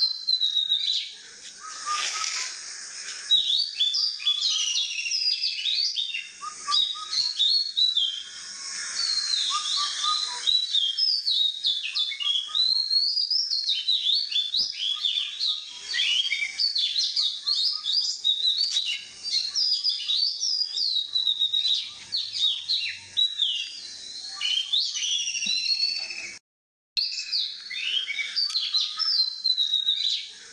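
Many songbirds chirping and whistling over one another in a dense, continuous chorus, with quick rising and falling notes. The sound cuts out completely for about half a second near the end, then resumes.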